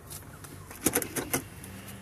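Automatic truck's gear lever being pulled back into park: four quick clicks about a second in, over a low steady cabin hum.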